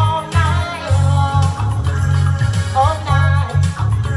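A female singer performing live with an amplified band, her sung melody over a strong, pulsing bass line and drums, heard through the PA system.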